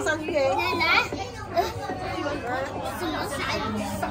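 Overlapping chatter of a crowd of visitors, with children's high voices among the adults.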